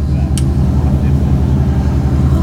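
A vehicle engine running with a steady, evenly pulsing low drone, and one short click about half a second in.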